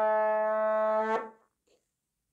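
A single steady, brass-like horn note, held without wavering and then cut off a little over a second in.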